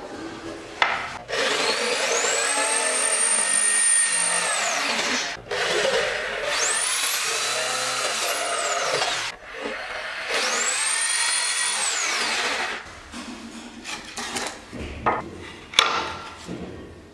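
Corded electric drill boring into strips of sagwan (teak) wood in three runs, each spinning up, holding a steady whine, then winding down. A few light knocks of wood being handled follow near the end.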